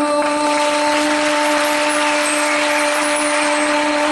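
A female singer holds one long, steady final note into a microphone. Beneath it, a loud wash of hiss-like noise comes in about a quarter second in and grows.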